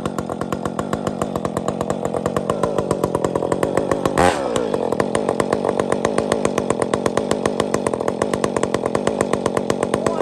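Husqvarna 562 two-stroke chainsaw idling with a steady, even pulse. A little over four seconds in there is one short loud burst, and the engine pitch drops back after it.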